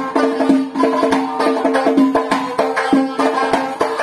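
Instrumental Uzbek folk music: a tar, a long-necked plucked lute, plays a quick repeating melody over steady strokes of a doira frame drum.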